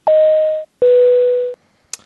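Two-tone electronic airliner seatbelt-sign chime: a higher steady tone, then a slightly longer lower one, a ding-dong falling in pitch. A brief click follows near the end.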